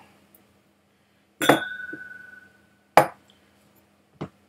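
Glassware clinking: one glass strike about one and a half seconds in that rings on clearly for over a second, then a short, sharp knock about three seconds in.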